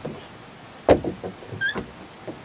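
Knocks and thumps of a child climbing through a plastic playground tube, the loudest about a second in, with a short squeak near the end.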